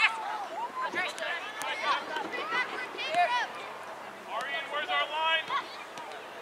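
High-pitched shouting and calling from several young players and people on the sideline across an open soccer field, the calls overlapping and coming thickest about two-thirds of the way through. There is a sharp knock right at the start.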